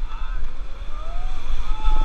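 Whitewater rapids rushing around an inflatable raft, with heavy wind buffeting on the microphone and rafters yelling, one long held shout near the end as the raft drops into a wave.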